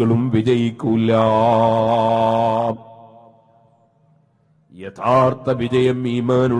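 A man's voice chanting in a sing-song recitation style, holding one long steady note for nearly two seconds. The note dies away in echo, and the voice starts a new phrase near the end.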